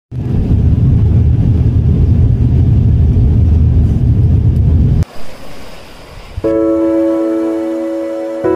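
Aircraft cabin noise, a loud steady low rumble heard from a window seat, which cuts off abruptly about five seconds in. About a second and a half later, background music with sustained, held notes begins.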